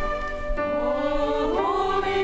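Church choir singing a cantata with a small string ensemble of violins, cello and double bass, holding sustained chords; about a second and a half in, the voices slide up into a new, higher chord.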